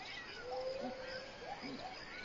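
A cat meowing faintly: one long drawn-out note about half a second in, then a couple of short calls.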